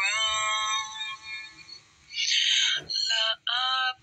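Melodic Quran recitation in Arabic by a high voice: a long drawn-out note that fades away, a breathy hiss about two seconds in, then the next chanted phrase starts.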